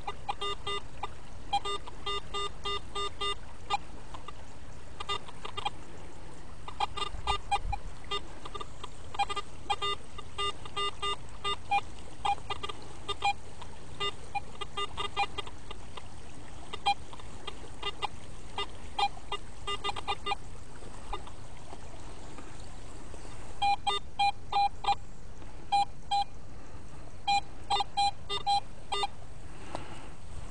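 Garrett AT Pro metal detector giving short beeps in quick bursts as its coil is swept over gravelly ground. The tones change between a lower and a higher pitch from one run of beeps to the next.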